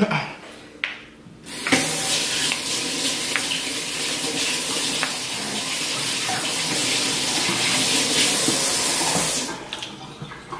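Water running steadily from a tap into a sink, turned on about two seconds in and shut off near the end.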